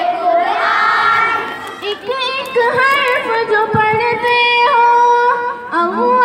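A naat sung in a melodic voice. A blended vocal passage gives way, about two seconds in, to long held notes decorated with quick turns in pitch.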